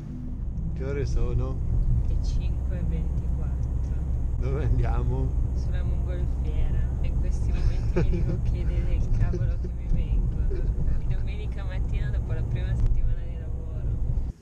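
Steady low rumble of a car on the move, heard from inside the cabin, with people chatting over it.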